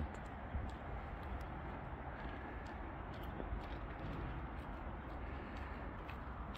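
Quiet outdoor background noise: a steady low rumble with a few faint scattered clicks.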